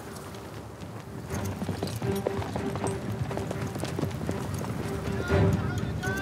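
Several horses galloping on sand, a dense patter of hoofbeats that grows louder about a second in, over background music with a steady held note.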